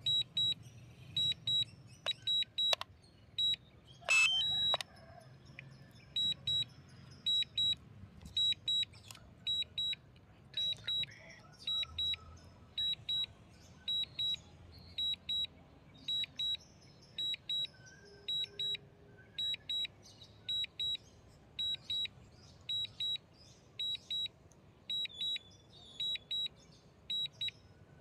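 Repeated pairs of short, high electronic beeps, a pair about every 0.7 seconds, from the DJI drone app's warning alert while the drone returns home automatically after losing the remote-control signal. A few sharp clicks come in the first few seconds.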